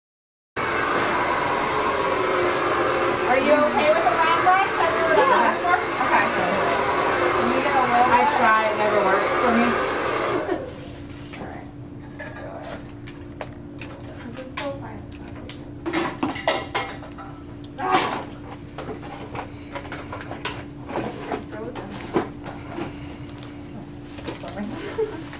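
For about ten seconds there is a loud, dense mix of indistinct voices over broad noise, which stops abruptly. After that there is a quiet room with a steady low hum and scattered small clicks and knocks of handling.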